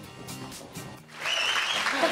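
Soft background music with plucked notes, then about a second in a burst of applause breaks in sharply and much louder.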